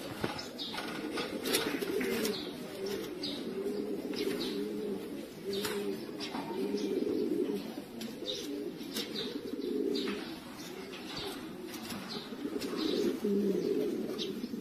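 Many domestic pigeons cooing at once, low overlapping coos without a break, with scattered short sharp clicks among them.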